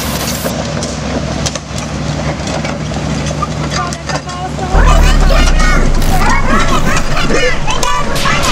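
Kobelco hydraulic excavator's diesel engine running as the machine travels on its steel crawler tracks over asphalt, with clatter from the tracks. The engine gets suddenly louder about five seconds in.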